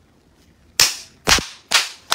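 A man clapping his hands: three sharp claps about half a second apart, the first coming nearly a second in.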